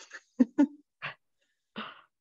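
A woman's soft, breathy laughter in about five short bursts, chopped off in between by the call's noise suppression.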